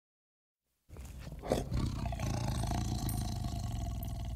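Bengal tiger roaring: one long, low call that starts about a second in, grows louder half a second later and holds.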